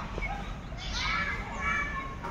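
Children's voices, calling out as they play, over steady background noise.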